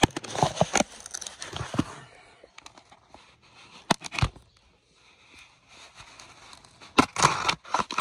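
Cardboard shipping box being opened by hand: rustling and tearing of tape and cardboard in the first couple of seconds, a few sharp clicks, a lull, then a louder burst of tearing near the end.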